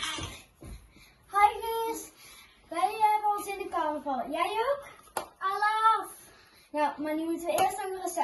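Young girls' voices speaking in long, drawn-out, sing-song phrases with short pauses between them; dance music cuts off at the very start.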